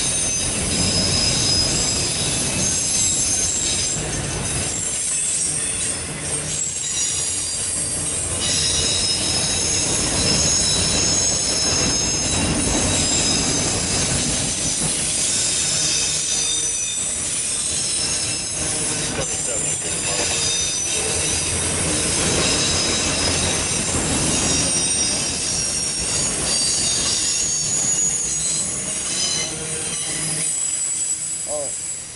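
Loaded autorack cars of a freight train rolling past close by: a steady rumble of wheels on rail with several high, steady squealing tones from the wheels. The sound eases slightly near the end as the last car goes by.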